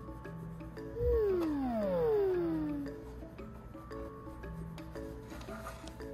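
Gentle background music of short repeating notes; about a second in, a soft low thump is followed by a long, smoothly falling whistle-like sound effect that slides down in pitch for about two seconds.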